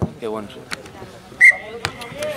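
A referee's whistle blown once: a short, sharp blast about one and a half seconds in that quickly fades, stopping play. Spectator voices and a couple of sharp clicks are heard around it.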